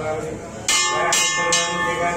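A temple bell rung with three strikes about half a second apart, starting a little after half a second in, each stroke ringing on into the next.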